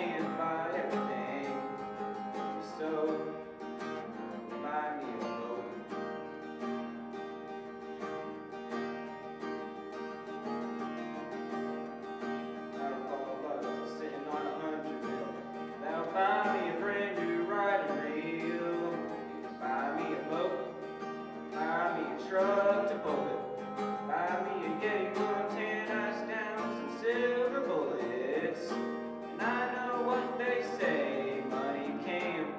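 Acoustic guitar accompanying a country song, with a teenage boy singing through a microphone and PA; the voice comes in most clearly about halfway through.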